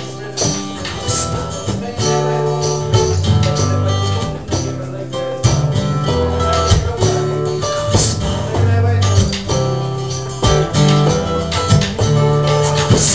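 Acoustic guitar strumming chords in a steady rhythm, with no singing.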